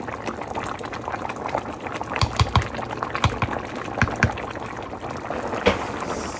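A pot of thick soup boiling hard, its bubbles popping and gurgling, with a run of louder, deeper pops about two to four seconds in.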